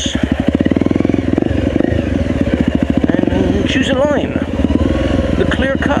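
Dirt bike engine running on a rough forest trail, with a steady pulsing note that carries through the whole stretch.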